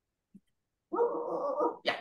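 A student's voice coming over the video call, holding one syllable at a steady pitch for under a second in answer to the teacher's question. The teacher's short "yeah" follows near the end.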